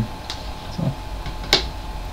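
A single sharp click about a second and a half in, with a short spoken "so" just before it, over a steady low hum.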